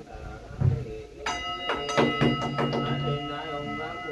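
Ritual chanting by a group of men. A dull thump comes about half a second in, and a bell is struck a little after a second, its clear ringing tone holding on under the chanting.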